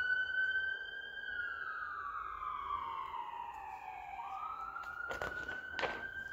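A siren wailing. Its pitch falls slowly for about three seconds, jumps back up about four seconds in and holds high. Near the end there are two short rustles of a book page being turned.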